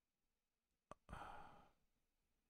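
A man's quiet sigh, a soft breath out lasting about half a second, just after a faint click, in an otherwise near-silent room.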